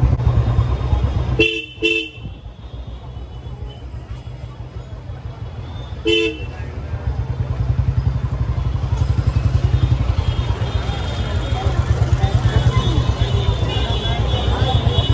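Vehicle horn toots on a busy street: two quick beeps about a second and a half in and another single beep about six seconds in, over a steady low rumble of traffic, with crowd chatter of a crowded market street in the later part.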